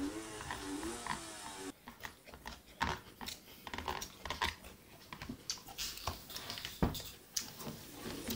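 Suzuki GT750's three-cylinder two-stroke engine running, heard faintly through computer speakers. It comes with irregular sharp pops and knocks from about two seconds in.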